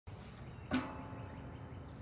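Outdoor background noise with a steady low rumble. About three quarters of a second in there is one short pitched sound, and a faint steady tone lingers after it.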